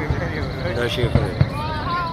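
Fireworks bursting as a few short, dull low thuds, with people's voices talking over them.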